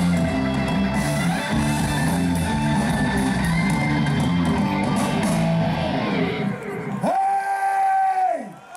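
Live rock band playing electric guitars, bass, drums and vocals, loud through a stadium PA. The song ends about six seconds in, and about a second later a single long high note is held.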